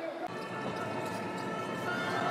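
Steady crowd noise in a full basketball arena.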